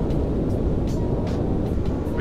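Steady wind rush and road noise on a helmet-mounted microphone while riding a Honda Grom at road speed, with the bike's 125 cc single-cylinder engine running under it.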